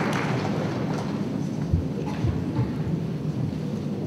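Steady low rumble of a large conference hall's room noise, with a few soft low thumps about two seconds in.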